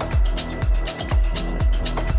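Electronic dance music from a progressive house and melodic techno DJ mix: a steady four-on-the-floor kick drum about twice a second, with hi-hats ticking between the kicks over sustained synth tones.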